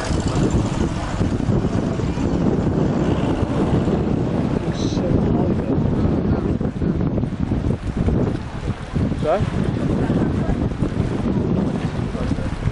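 Wind buffeting the microphone: a steady rough rumble that stays strong throughout, with faint voices behind it.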